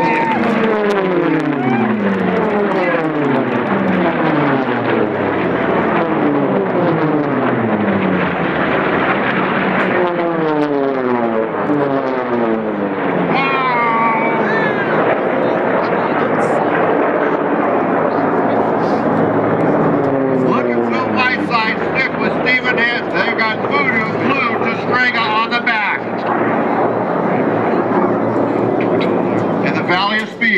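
Unlimited-class piston-engined racing warplanes pass low and fast one after another, each engine note falling in pitch as it goes by. There are three main passes: at the start, about ten seconds in and about twenty seconds in.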